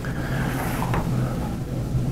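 A steady low hum of background room noise, with a faint tap about a second in.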